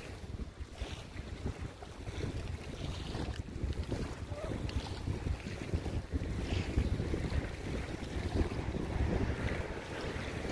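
Wind buffeting the microphone in a steady, fluttering rush, with faint waves lapping under it.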